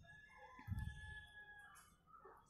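A faint, drawn-out distant bird call lasting about a second and a half, with a soft low thump about two-thirds of a second in.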